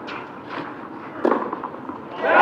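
Tennis ball hit back and forth with rackets during a rally. A couple of faint knocks in the first half second are followed by one loud, sharp racket strike a little over a second in.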